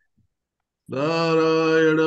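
After a near-silent pause, a man's voice begins chanting a Sanskrit prayer about a second in, holding one syllable on a steady pitch.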